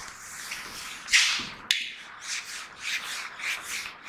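Whiteboard duster wiping marker off a whiteboard. One long loud wipe about a second in, a sharp tap just after, then quick back-and-forth rubbing strokes about three a second.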